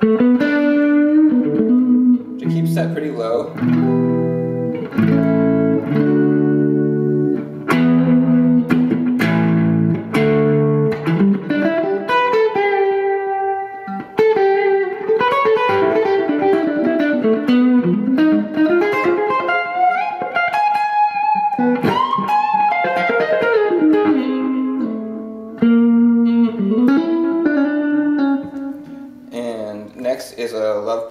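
Electric guitar played through an eighties Ibanez Tube Screamer into a Fender DeVille 410 amp, a warm, light overdrive. It plays chords for the first ten or so seconds, then a single-note lead line with bends and slides.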